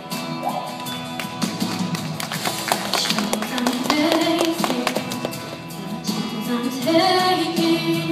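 A young female singer sings live into a microphone over a recorded instrumental backing track. The accompaniment has sharp percussive hits, and the voice comes in strongest in the middle and near the end.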